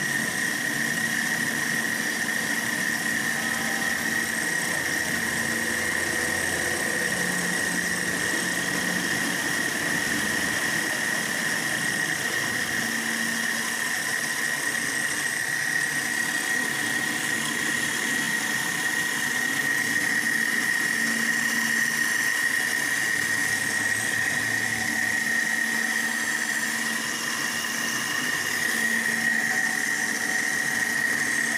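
Homemade lathe milling attachment running, its motor-driven end mill cutting into a metal bar held in the lathe chuck: a steady high whine over even machine noise.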